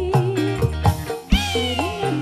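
Live dangdut band music: a woman's held, wavering sung note over regular hand-drum hits and bass, with a high note sliding downward about two-thirds of the way through.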